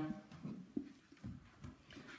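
Faint, irregular soft knocks and scraping as a knife is drawn down along a deer carcass's neck and the meat is handled.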